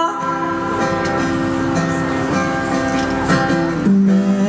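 Acoustic guitar strumming chords in a live song, an instrumental stretch between sung lines.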